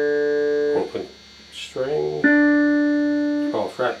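An Epiphone Les Paul's D string rings open and dies away just under a second in. After a short gap the same string is plucked again as a fretted first-fret note and rings for about a second. The two notes are played one after the other to check the guitar's intonation against a tuner.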